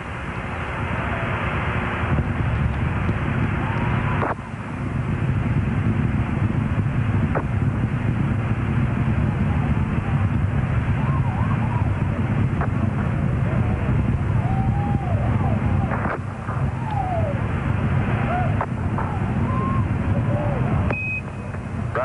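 Space Shuttle Columbia's solid rocket boosters and main engines during ascent, heard over broadcast audio as a loud, steady low rumble. Near the end a brief high beep, the Quindar tone that keys the mission-control radio loop, comes in.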